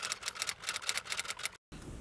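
Typewriter key-clicking sound effect: a rapid run of sharp clicks, about eight a second, that cuts off suddenly shortly before the end.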